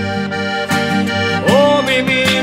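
Button accordion (bayan) playing sustained notes over a strummed acoustic guitar, an instrumental passage of a song. A singing voice comes in near the end.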